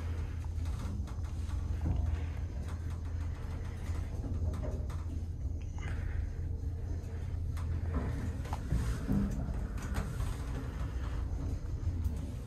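A passenger lift car travelling between floors: a steady low hum of the lift machinery, with faint occasional clicks and rattles from the car.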